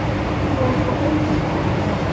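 MTR M-Train electric multiple unit running underground, heard from inside the passenger car: a steady, loud rumble of wheels and running gear with a faint motor hum.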